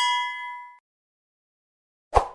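Bell-like 'ding' sound effect of an animated subscribe button's notification bell: a bright ringing tone that fades out within about a second.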